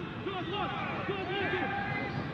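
Raised men's voices calling out in short, high-pitched arcs over steady stadium background noise, with no clear words.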